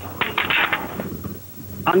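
A quick burst of gunfire, several sharp cracks in under a second, heard from inside a moving vehicle over a low engine hum.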